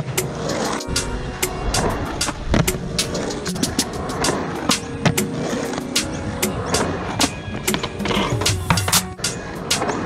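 Skateboard wheels rolling and carving on a concrete bowl, under a backing music track with a steady beat.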